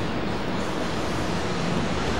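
Steady rushing background noise with no distinct sound standing out.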